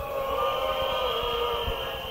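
A single held tone with overtones, sinking slightly in pitch and slowly fading, with no beat under it. It runs straight on from the MC's last chanted note, like a drawn-out echo tail of his voice.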